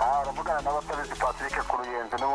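Only speech: a person talking continuously, with music faint beneath it.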